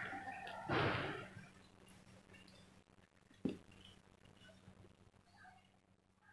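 A rushing noise for the first second or so, swelling briefly just under a second in, then near quiet with one short, dull knock about three and a half seconds in and a few faint ticks.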